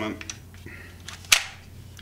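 A single sharp click about one and a third seconds in, from the Festool Carvex PS 420 jigsaw and its detachable base being handled.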